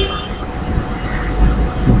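A low rumble that swells and fades, with a faint steady hum above it.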